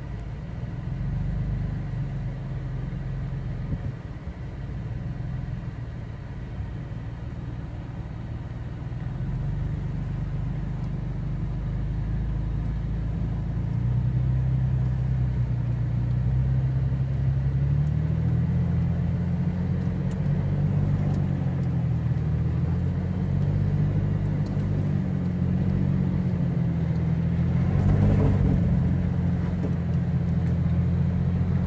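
A 4x4's engine running under load, heard from inside the cabin as it climbs a steep dirt trail. The engine note rises and wavers from about halfway through as it works harder, and a brief rougher noise comes near the end.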